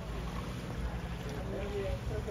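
Background ambience of faint, distant voices talking over a steady low rumble.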